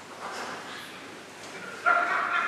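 Faint rustling, then near the end a sudden loud, high-pitched whining cry begins, like a dog's whimper.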